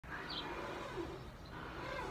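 Faint outdoor ambience: a quiet, even background with a brief high chirp about a third of a second in.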